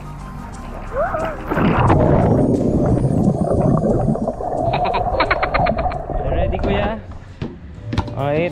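Muffled underwater rush of water and bubbles, heard through a submerged action camera after a jump into a swimming pool, lasting about five seconds and dropping away near the end. A short laugh or voice comes just before it, and background music runs underneath.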